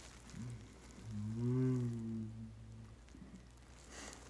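A man's low, wordless vocal sound held for about two seconds, starting about a second in, its pitch rising a little and then sinking back.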